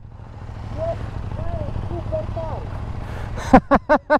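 KTM motorcycle engines idling at a standstill, a low steady rumble. Near the end a short run of laughter cuts in over it.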